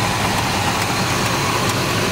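1968 Buick GS 400's original 400 cubic-inch V8 idling steadily, heard from close over the open engine bay.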